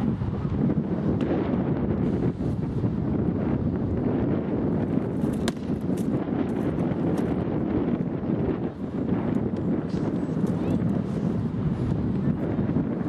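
Steady wind rumble on the microphone, with scattered sharp knocks of rattan weapons striking shields and armour during armoured sparring.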